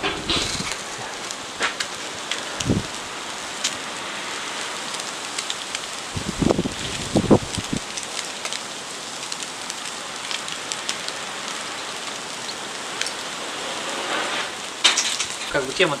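Mackerel on skewers sizzling over hot charcoal in a mangal grill: a steady sizzle with scattered sharp crackles and pops. A few short low thumps come about three seconds in and again around six to seven seconds.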